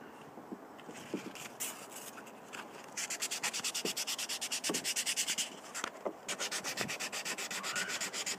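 600-grit wet-or-dry abrasive paper rubbed by hand over a Corian handle: quiet, uneven rubbing at first, then rapid, even back-and-forth strokes from about three seconds in, with a brief pause a little after the middle.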